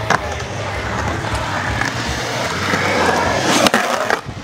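Skateboard wheels rolling on a concrete bowl, the rolling noise building toward the end, with a couple of sharp clacks from the board near the end.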